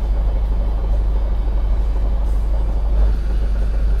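Road traffic at a city intersection: cars passing, heard as a steady noise over a constant deep rumble.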